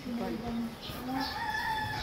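A rooster crowing, one drawn-out call.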